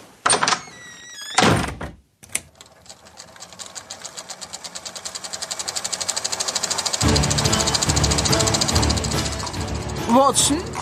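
Podcast intro sound design: two heavy hits with a falling tone, a moment of silence, then a fast, even ticking that swells steadily louder. Music with a deep bass joins the ticking about seven seconds in.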